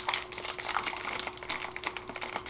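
Plastic instant-ramen packet crinkling in the hands: a quick, irregular run of small crackles and clicks as the bag is worked open.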